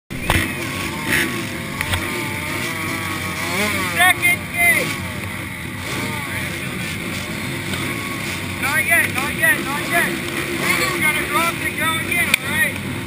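Several small two-stroke youth motocross bikes idling together at the starting gate, with repeated quick throttle blips that rise and fall in pitch, clustered about four seconds in and again near the end.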